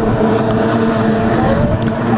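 Two-stroke racing outboard on a small OSY 400 class hydroplane running at racing speed as the boat passes, a steady engine note with no break.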